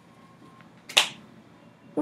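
A single sharp snap about a second in, over faint room tone.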